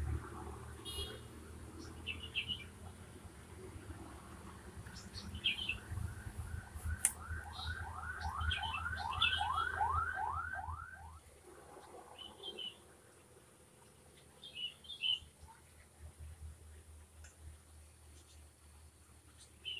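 Small birds chirping on and off, with a regular run of about a dozen quick rising notes, about three a second, midway through. Under them is low rumbling handling noise that fades out about two thirds of the way in.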